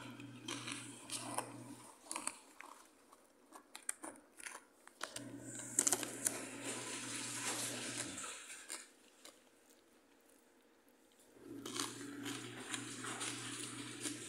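Crunching and crinkling from a bag of Ding Dong snack mix, in three stretches of two to three seconds each with quieter gaps between.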